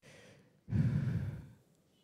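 A woman's breath into a handheld microphone held close to her mouth: one audible exhale lasting under a second, starting about two thirds of a second in, after a fainter breath at the start.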